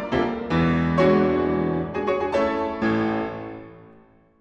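Steinway concert grand piano playing a run of full chords. The last chord, struck about three seconds in, is left to ring and die away into silence.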